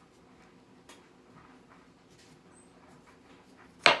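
A large kitchen knife slicing through a raw turnip on a wooden cutting board: a few faint crunches and scrapes, then one sharp knock near the end as the blade comes through and strikes the board.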